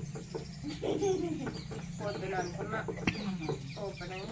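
Chickens clucking in short, repeated calls, over a steady low hum.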